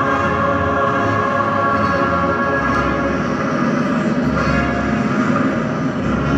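Orchestral music with brass holding long, sustained chords, played loudly over loudspeakers in a large hall.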